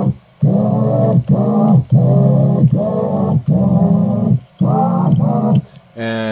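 Cassette-tape sampler keyboard playing back a recorded pitched sound in about seven short notes, one for each button press. The tape starts when a button is pressed and stops when it is released, so the pitch bends briefly at the start and end of every note.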